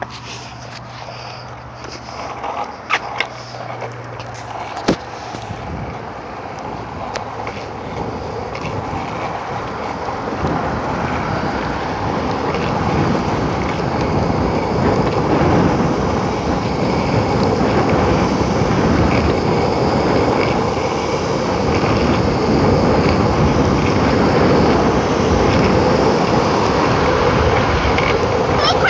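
Longboard wheels rolling on an asphalt path: a steady rumble that grows gradually louder as the board gathers speed. A few sharp knocks come in the first five seconds, before the rolling builds.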